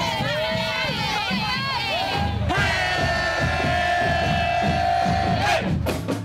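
Crowd cheering and shouting over music with a steady beat; from about halfway, a single long note is held for about three seconds before cutting off just before the end.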